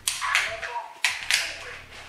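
Pistol dry-fired: four sharp clicks of the trigger and action, in two quick pairs.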